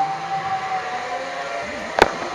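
Zipline trolley pulleys running along the steel cable: a steady whine that slides slightly lower in pitch and fades near the end.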